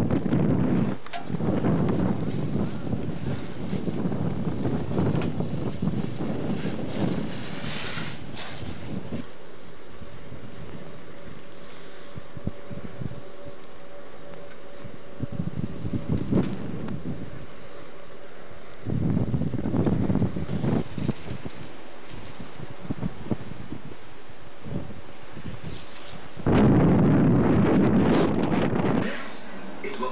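Strong, gusty wind blasting the microphone in surges. It eases through the middle and is loudest a few seconds before the end.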